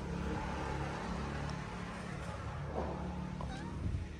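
A calico kitten meowing, with a short call about three seconds in, over a steady low rumble.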